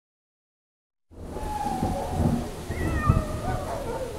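Silence for about a second, then a cartoon thunderstorm sound effect starts suddenly: rumbling thunder and rain noise. A few short gliding high tones sound over it near the middle.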